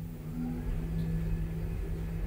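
Asea Graham traction elevator (modernised by Kone) starting off and accelerating: a steady low motor hum with a faint rising whine as the car picks up speed.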